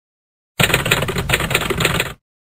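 Typewriter-style typing sound effect: a rapid run of clacking keystrokes that starts about half a second in, accompanying title text being typed onto the screen.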